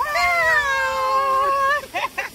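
A toddler's long vocal squeal, one drawn-out high cry of about a second and a half whose pitch slides slowly down.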